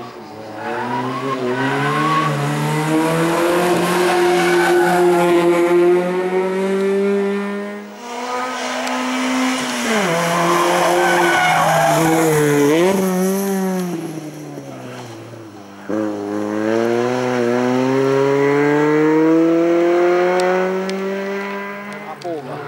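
Ford Puma's four-cylinder engine revving hard in a slalom run: it climbs in pitch under acceleration, drops off sharply about eight seconds in, wavers up and down, then climbs again from about sixteen seconds in. Tyres squeal in the tight turns.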